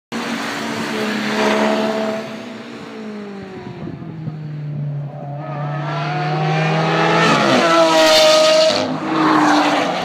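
Cars passing at speed on a race track. First a car goes by with its engine pitch falling away. Then the Lamborghini Aventador Roadster's V12 accelerates hard, its pitch climbing and dipping at a gearshift just past seven seconds, loudest around eight seconds as it passes; a rougher, noisier pass follows near the end.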